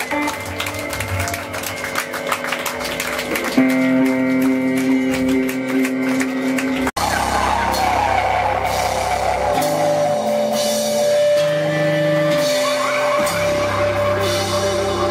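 Live rock band playing: electric guitar, bass guitar and drum kit, with sustained guitar notes and drums. The sound cuts out for an instant about halfway through.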